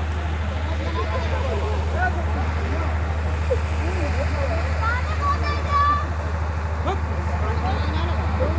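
Crowd chatter: many people talking at once over a steady low hum.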